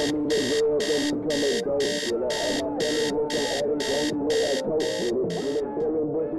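Electronic alarm clock beeping in short, even pulses, about two a second, stopping shortly before the end.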